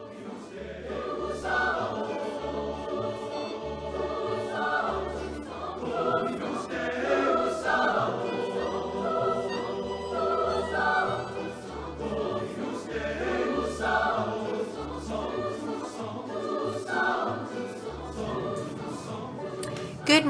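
Intro music of a group of voices singing in harmony, choir-like, over a pulsing low bass line.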